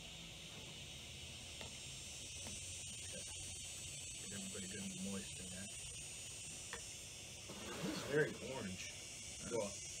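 Quiet eating of cereal and milk, with metal spoons tapping and scraping plastic bowls and chewing, over a steady high insect drone. Mumbled voices come in near the end.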